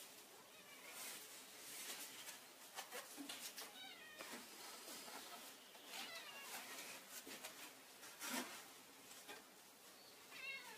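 A domestic cat meowing faintly a few times, over soft rustling and handling of fabric chair webbing being wrapped around the seat frame of a stick chair.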